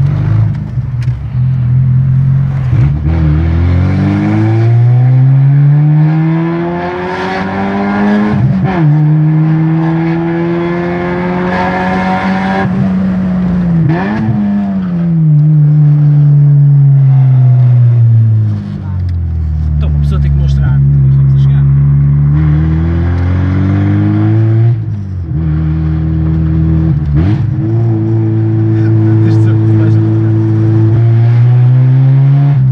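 Fiat Punto 75 ELX's four-cylinder petrol engine running with no mufflers on the exhaust, loud inside the cabin as the car is driven. The revs climb and drop back several times, then hold steady near the end.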